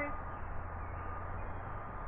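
Steady low background hum with an even hiss and a faint steady high tone; no distinct event.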